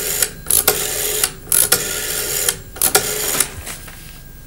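Rotary telephone dial being turned and released, a number being dialled: about four whirring runs of rapid clicks as the dial spins back, each half a second to a second long, with short pauses between them.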